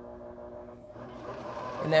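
Juki MO-623 serger motor running at slow speed, a steady hum of several tones that dips slightly about a second in and then picks up again.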